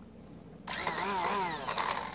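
A handheld stick blender's motor starts about a third of the way in and runs in thick soap batter, its pitch wavering quickly up and down as it works through the mix.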